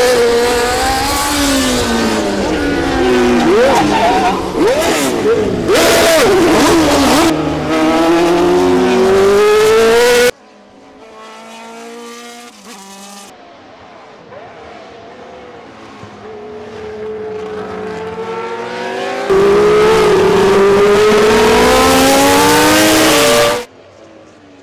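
Historic Formula 1 racing engines at high revs, several cars together, the pitch rising and falling through gear changes as they go by. About ten seconds in the sound cuts abruptly to a quieter passage of engine sound, then loud engines return near the end and stop suddenly.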